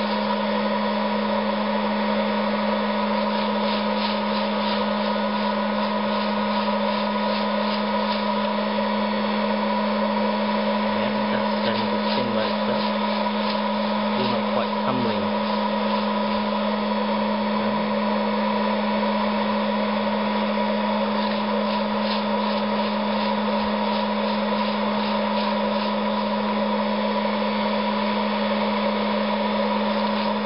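Hot-air popcorn popper's fan and heater running steadily with a constant hum, blowing coffee beans around its chamber early in the roast, before first crack. Faint irregular rattles come from the beans tumbling as a long wooden spoon stirs them.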